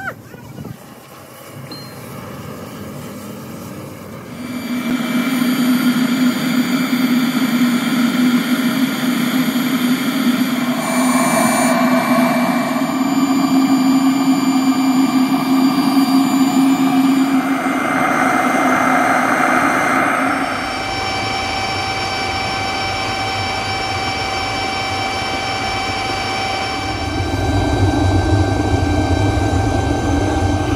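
Blower and burner of a rotary drum melting furnace running with a steady whine made of several held tones, growing much louder about four seconds in. From about twenty seconds a deep low rumble joins in, strongest near the end as flame blasts from the furnace mouth.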